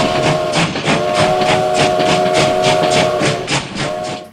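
Steam-train-like sound: a steady chord-like whistle over rapid, even chuffing, about four to five puffs a second. The whistle breaks off briefly about a second in and stops near the end.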